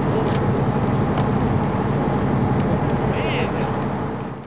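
Engine of heavy machinery running steadily at idle, a constant low hum with outdoor background noise.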